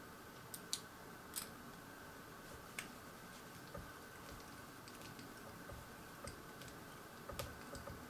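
Faint, irregular small clicks and taps of plastic scale-model parts, a two-halved plastic engine block, being handled and fitted in the fingers, with the sharpest click about a second in and a few more close together near the end.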